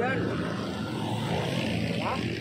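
An engine runs steadily in the background, with a brief bit of a man's voice at the very start.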